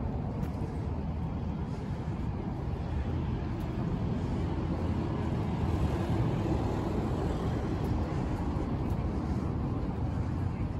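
Road traffic on a wide multi-lane avenue: a steady wash of passing cars and tyre noise, swelling as a delivery truck goes by about six seconds in.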